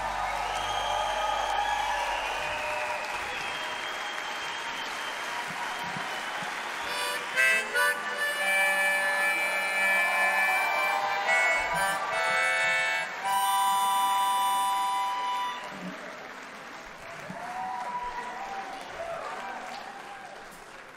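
Harmonica solo played into a microphone over a quiet band, with bent notes, a few sharp accents and a long held chord in the middle. The drums drop out about two seconds in, and the playing fades near the end.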